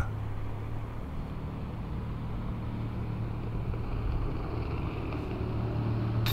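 Steady low drone of a distant engine, slowly growing louder.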